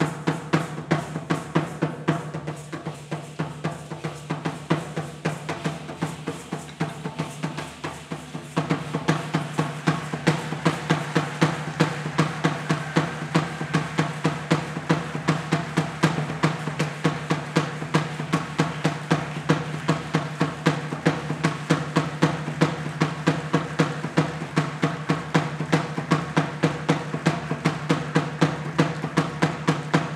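A large upright skin drum beaten with two sticks in a fast, steady beat, growing louder about eight seconds in.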